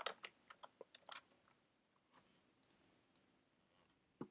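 Faint computer-keyboard typing: quick keystroke clicks in a burst over the first second and a half, then a few more about three seconds in.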